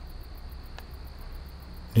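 Crickets chirping in a fast, even, high-pitched pulse, over a low steady hum.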